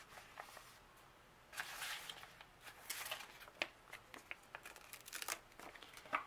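Paper sticker sheets being handled: faint rustling and crinkling with scattered light clicks and taps.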